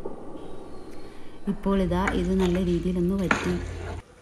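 A ladle stirring and scraping a thick crab masala in a clay pot, with a light sizzle. A woman's voice comes in over it about halfway through.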